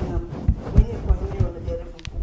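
A woman talking, with about four short, dull low thumps under her words, like a microphone being knocked as she gestures.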